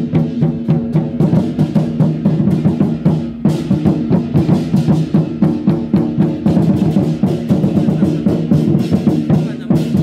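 Large painted barrel war drums of a Taiwanese temple war-drum troupe beaten together in a fast, driving rhythm, with several strokes a second over a steady ringing tone.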